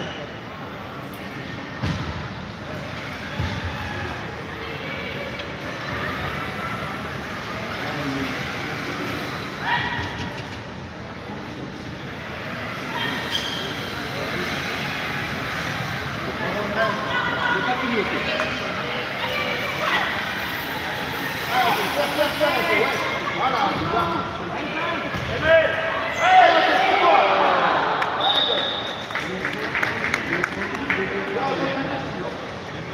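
Voices calling out across a large echoing sports hall, with occasional thuds of the ball struck by power wheelchairs. The voices grow louder and busier in the second half.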